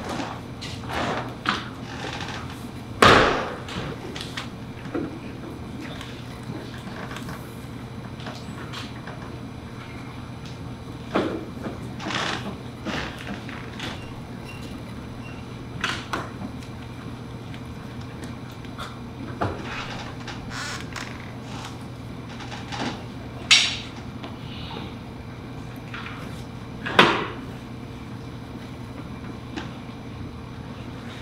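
Sparse handling noises at tables: short knocks and rustles of paper slips, pencils and chairs as ballots are written and folded. The three loudest knocks come about three seconds in, near twenty-four seconds and near twenty-seven seconds, over a steady low hum.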